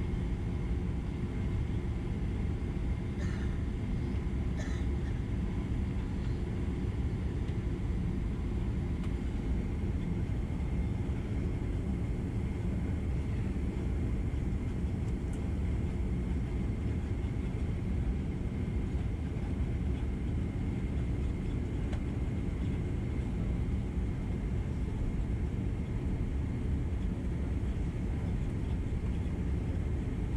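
Cabin noise inside a Boeing 767-300 taxiing on the ground: a steady low rumble of the jet engines at low power, with a thin steady whine above it. Two faint clicks come a few seconds in.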